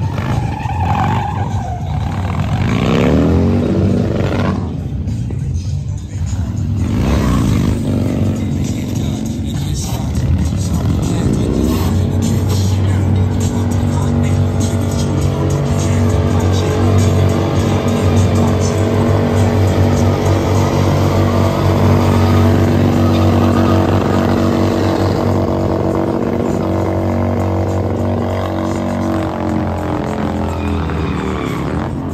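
V-twin cruiser motorcycle engines revving up and down during stunt riding and burnouts. About twelve seconds in, one engine climbs to high revs and is held there steadily for most of the rest, with the revs falling away near the end.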